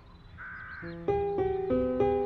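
Film score: slow, sustained piano notes enter just under a second in and grow louder, each struck note fading away. Just before them, a single short bird call.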